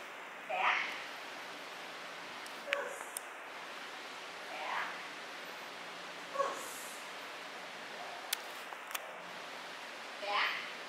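A woman speaking four short, quiet words to a dog heeling beside her, one every two seconds or so, over a steady background hiss, with a few faint clicks.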